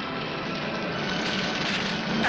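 A steady, dense rumbling drone with faint held tones in it, growing slightly louder toward the end.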